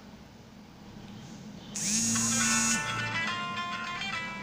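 Windows 7 startup sound played through the computer's speakers: about two seconds in, a rising swell opens into a bright, ringing chord of several steady tones. Before it there is only a faint low hum.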